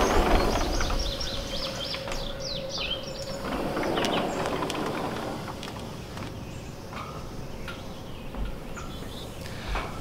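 Birds chirping in short, scattered calls, most of them in the first few seconds, over a steady outdoor background hiss. A faint steady hum runs through the first half.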